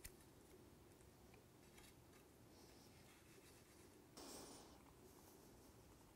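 Near silence: room tone, with a faint, short rustle a little after four seconds in as dry spice rub is handled on raw ribeye steaks.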